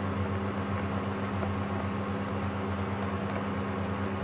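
Wooden spatula stirring stink beans through a thick red curry and milk sauce in a nonstick pan, soft and continuous, over a steady low hum.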